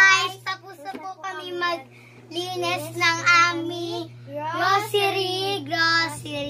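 Young girls singing out in high, drawn-out voices, in several phrases, over a steady low hum.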